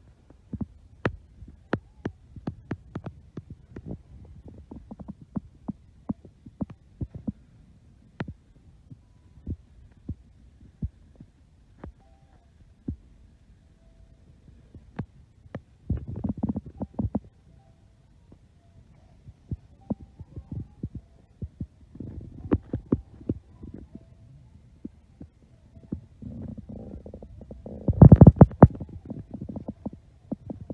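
Handling noise from a hand-held phone camera: scattered clicks and taps, with dull thumps and rubbing on the microphone. The loudest burst of thumps comes near the end.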